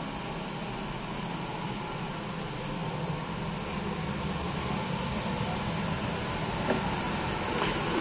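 A mechanical fan running steadily, growing slowly louder, with a faint click near the end.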